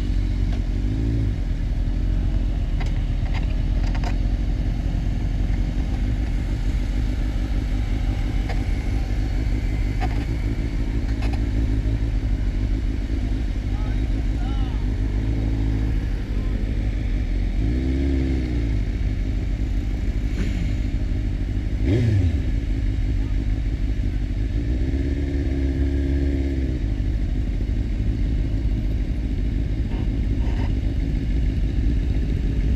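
Sport motorcycle engine running at low speed, with wind rumbling over the microphone. In the second half the engine pitch rises and falls a few times in short revs.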